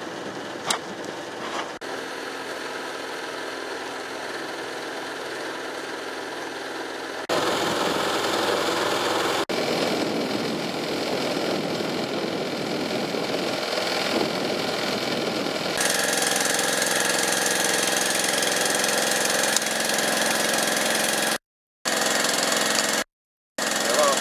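Military water-tanker truck's engine idling steadily. The sound changes abruptly at cuts about seven and sixteen seconds in, and cuts out twice briefly near the end.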